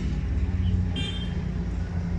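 A motor vehicle's engine idling close by, a steady low hum, with a brief high chirp about a second in.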